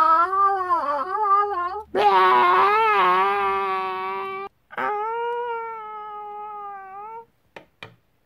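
High-pitched cartoon-style wailing cries, cat-like, given as the voice of the slime-filled glove doodle as it is cut: three long, wavering cries, the second the loudest. Two short clicks follow near the end.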